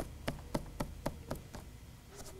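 A quick run of light taps, about four a second, lasting about a second and a half.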